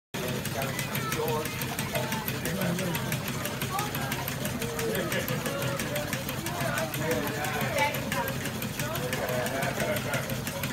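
Model stationary steam engines running, with a rapid, even clicking from one of the engines, over a low steady hum and voices in the background.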